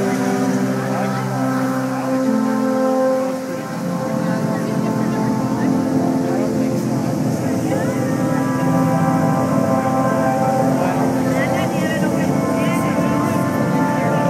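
Show music with long held notes that change pitch every second or two, over the steady murmur of a crowd talking.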